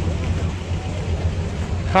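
A steady low rumble with faint voices of people talking in the background.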